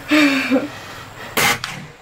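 A scoped break-barrel air rifle fires a single shot about a second and a half in: one sharp crack with a short tail. A brief voice sound comes just before it, near the start.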